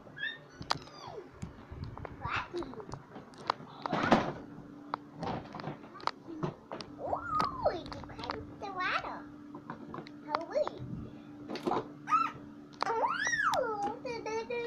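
A child's voice making wordless playful calls and squeals, rising and falling in pitch, with a loud swooping call near the end. Frequent clicks and knocks from handling the camera and plush toys, and a steady low hum from about four seconds in.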